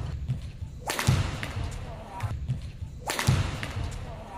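Badminton rally: two sharp racket strikes on the shuttlecock, about two seconds apart, each echoing and dying away in the large hall. Players' footsteps thud on the court.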